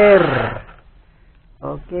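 Speech only: the end of a long drawn-out spoken word that falls in pitch and trails off, a pause of about a second, then talking again.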